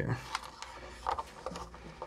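Faint handling noise: a few light clicks and rubs as a dome tweeter, its leads just connected, is handled and pressed into the cutout of a plywood speaker baffle.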